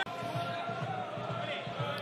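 Quiet ambience of a sparsely filled football ground, with scattered crowd voices and the thud of a football being struck for a penalty kick.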